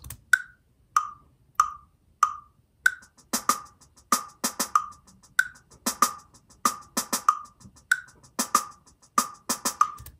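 Web-app drum playback: a metronome click counts in four beats, then a one-bar sixteenth-note rhythm plays on a snare drum sample over the click and loops about every two and a half seconds, a higher-pitched click marking each downbeat.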